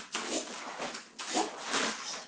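Swish of a cotton karate gi and forceful breaths as a karateka turns and steps down into a wide stance during a technique series: two noisy rushes, about a second apart.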